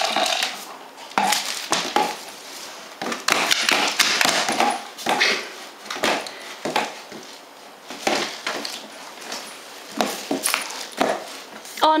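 A German shepherd playing with a tube-shaped treat toy, mouthing and chewing it and knocking and pushing it about on the floor, with irregular knocks, scrapes and rustles throughout.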